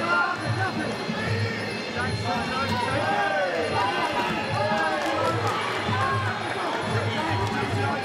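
Traditional Muay Thai fight music (sarama): a wavering, reedy Thai oboe melody rising and falling in pitch over a steady drum beat.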